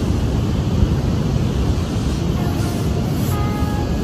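Wind buffeting the camera microphone in a steady low rumble, over the rush of ocean surf breaking on the beach.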